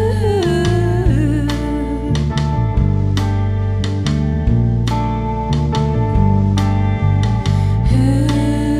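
Live rock band playing: guitar chords and drums with regular cymbal and drum strikes, and a woman singing held notes.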